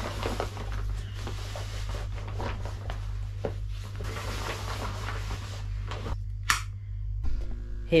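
Nylon compression boot sleeves rustling and rubbing as they are pulled on over the legs, with small knocks of handling and a steady low hum underneath. A short sharp rasp comes about six and a half seconds in.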